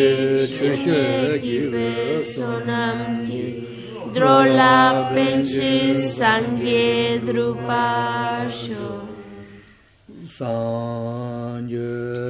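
Voices chanting Tibetan Buddhist prayers together in unison on a low, steady pitch, with a short pause for breath about ten seconds in before the chant resumes.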